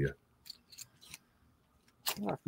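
A few faint, short clicks, four of them spread over about the middle second, from small objects being handled on a desk.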